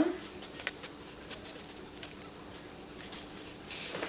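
Quiet food-handling noises: faint scattered clicks and taps as basil and packaging are handled at the counter, over a steady low hum.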